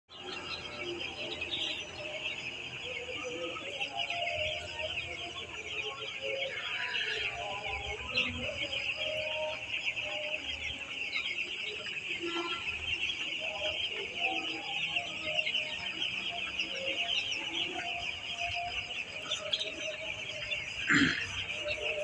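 A large flock of young broiler chicks peeping continuously, a dense high-pitched chorus of overlapping calls.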